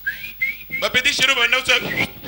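A person whistling a few quick rising notes, then a loud voice takes over.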